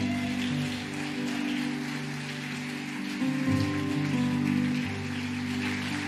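Keyboard playing soft sustained chords that change about half a second in and again about three seconds in, under a congregation's applause.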